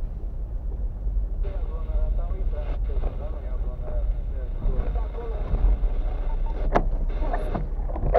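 Car interior road noise while driving slowly over a rough unpaved road: a steady low rumble. Near the end come sharp knocks as the windscreen wipers come on.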